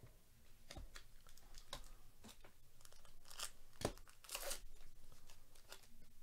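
A foil trading card pack being torn open and crinkled, a string of quiet crackles and tearing sounds, loudest about four seconds in, with cards being handled.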